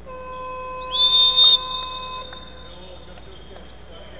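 A steady electronic buzzer tone sounds for about two seconds. About a second in, a referee's whistle is blown over it in one short, shrill blast of about half a second, the loudest sound here.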